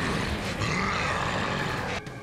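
Animated giant ape (Oozaru) growling and grunting: a deep, voice-acted monster growl over a rumbling bed of noise.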